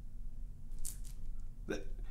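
A pause in speech over a steady low room hum, broken by a short breathy noise from a person about a second in and another brief breath near the end, just before talking resumes.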